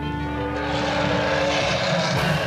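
A sustained chord of background music, with the noise of a car approaching swelling up over it from about half a second in.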